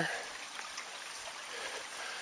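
Steady, faint hiss of water trickling through a shallow muddy channel at the lake's edge.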